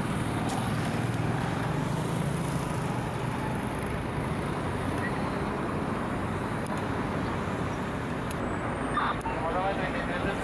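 Steady street traffic noise, with indistinct voices of people nearby.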